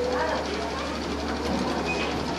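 Low, brief voices of a group of seated men over a steady low hum from the public-address system, in a pause in their chanted elegy.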